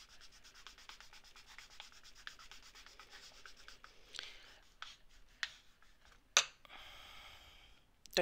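Clear acrylic block pressed and rubbed over soft polymer clay on a work surface, making faint, rapid scratchy rubbing. A sharp click a little after six seconds in, then a thin high squeak near the end.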